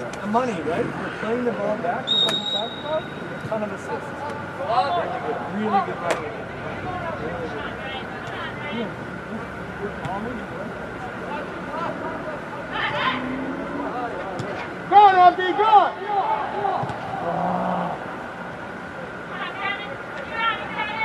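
Scattered, indistinct shouts and calls from players and sideline voices during a youth soccer match, several voices overlapping, with a louder burst of shouting about fifteen seconds in. A short high whistle tone sounds about two seconds in.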